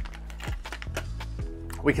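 Clear plastic clamshell packaging being popped open and handled: a string of sharp plastic clicks and crackles over quiet background music.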